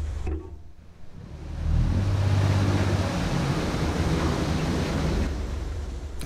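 Narrowboat's diesel engine running with a low steady hum. A loud rush of churning water swells up about two seconds in and eases off near the end, as the boat is pushed about by strong water flow in the lock.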